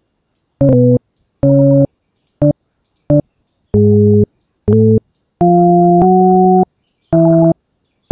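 LMMS TripleOscillator synth sounding a preview of each note as it is clicked into the piano roll: about eight separate synth tones at changing pitches, some short blips and some held about a second, with silent gaps between them. A couple of tones step to a new pitch partway through as the note is dragged.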